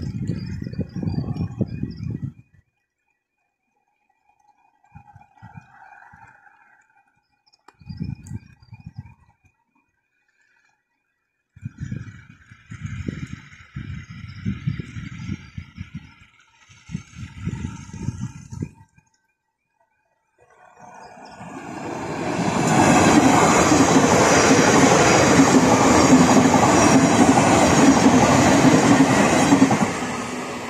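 Gusts of wind rumbling on the microphone. About two-thirds of the way in, a train approaches, and its wheels and rails stay loud through to the end as it passes over the level crossing.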